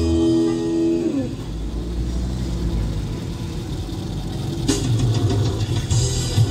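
A held musical note ends about a second in, sliding down in pitch. It leaves the low, steady rumble of a car's engine and road noise heard from inside the cabin while driving. Music starts again suddenly near the end.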